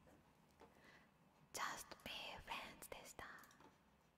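A woman whispering softly for about two seconds, starting about a second and a half in.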